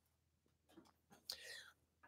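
Near silence: room tone, with one faint, brief vocal sound a little past the middle.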